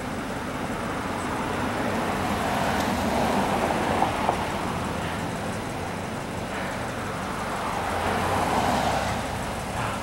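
Road traffic going by on a busy road: the steady rush of tyres and engines swells as one vehicle passes a few seconds in, and again as another passes near the end.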